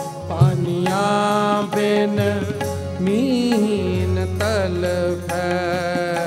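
Sikh kirtan: a harmonium holds a steady drone and chords under a man's voice singing long, wordless, ornamented lines of a devotional shabad.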